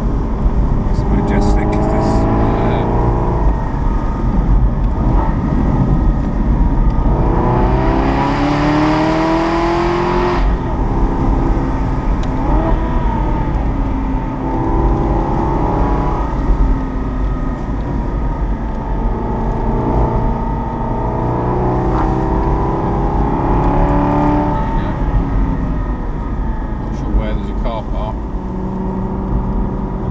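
Aston Martin V8 Vantage N400 roadster's V8 engine under way, its note rising and falling with throttle and gear changes, the strongest pull about eight seconds in. Steady road and wind noise lies under it.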